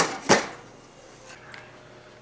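Glass lid set back down on a stainless steel cooking pot: a light tap, then a louder clack about a third of a second in.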